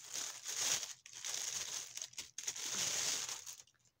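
Headphone packaging crinkling and rustling as a pair of headphones is handled and taken out, in two stretches with a short pause about a second in, stopping shortly before the end.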